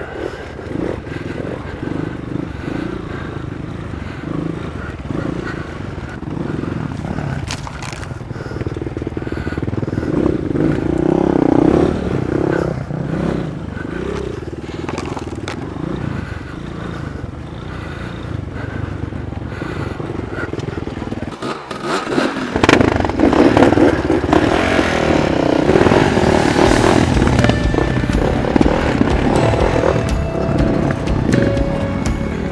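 Dirt bike engine running at low trail speed, revving up and down unevenly as the bike picks its way over rocks and roots.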